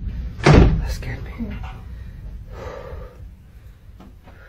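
A single heavy bang about half a second in, a wooden door slamming, with a short ring-out in the small room.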